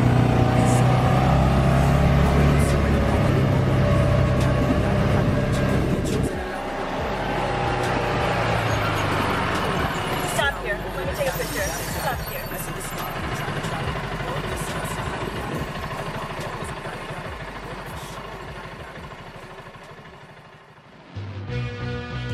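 Off-road buggy engine running as the buggy drives along, loud and steady for the first six seconds, then quieter and gradually fading. Guitar music starts about a second before the end.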